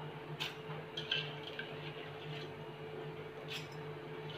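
Soaked rice and dal tipped from a steel bowl into a steel mixer-grinder jar: a faint wet slithering with a few light metal clicks, over a steady low hum.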